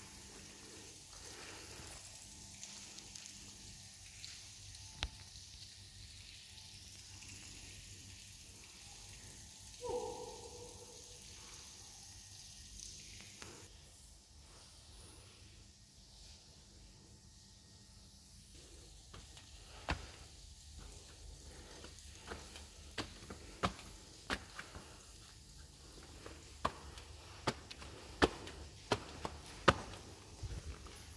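Footsteps on a hard walkway over a faint steady hiss, with one brief voice-like call about a third of the way in. From about two-thirds through come a run of sharp taps and clicks, irregular and roughly a second or less apart.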